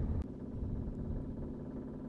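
Low, steady hum of background noise, with one faint click about a quarter second in.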